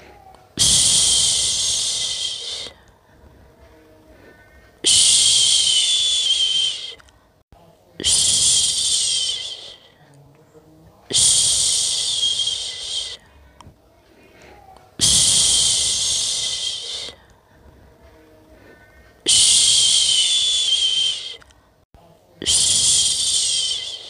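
A person shushing a long 'shhh' to lull a baby to sleep, seven times, each hush about two seconds long and fading at the end, with a breath-length pause of one to two seconds between them.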